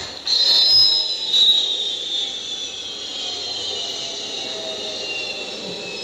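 Turbojet engines of the White Knight carrier aircraft taxiing past: a high-pitched whine that slowly falls in pitch, loudest in the first second and a half, then steady.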